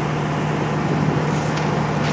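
Pramac GSW560V silenced diesel generator sets running steadily with a constant low hum. They are synchronized and load sharing in parallel with no load on them.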